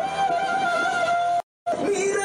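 Sung music with long held vocal notes, broken by a brief dead silence about one and a half seconds in.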